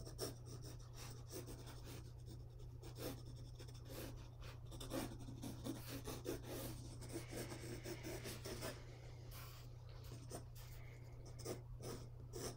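Faint pencil strokes scratching lightly across rough 300 gsm watercolour paper in short, irregular strokes, over a steady low electrical hum.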